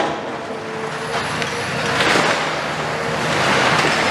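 Demolition excavators working scrap steel: a steady diesel engine drone with hydraulic noise, a sharp metal clank right at the start and a faint high whine through the middle.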